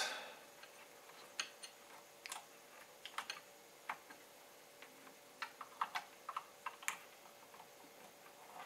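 Scattered small plastic clicks and ticks of banana-plug test leads being handled and pushed into a bench power supply's output terminals. The clicks come more closely together in the second half.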